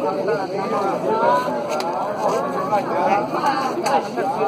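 Several people talking at once, indistinct overlapping voices.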